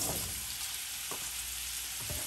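Sliced baby portobello mushrooms sizzling in hot oil and butter in a wok: a steady hiss, with a few faint knocks as pieces drop into the pan.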